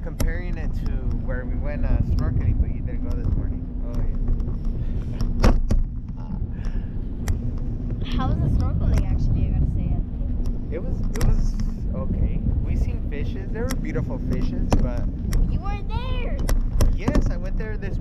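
Wind rumbling over the microphone of a camera carried aloft under a parasail, with a steady low hum beneath it and voices talking faintly.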